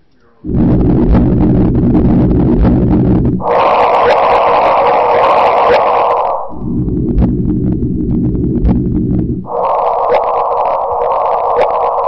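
Audio made from LIGO's recording of the first detected gravitational wave: about three seconds of low rumbling detector noise, then about three seconds of higher-pitched hiss, and the pair repeated.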